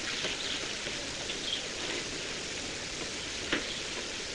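Steady, faint background hiss, with a single short click about three and a half seconds in.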